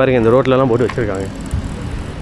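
A person speaking for just over a second, then a steady, noisy background with no clear event in it.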